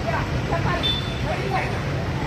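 Many schoolchildren's voices overlapping in calls and chatter, over a steady low rumble.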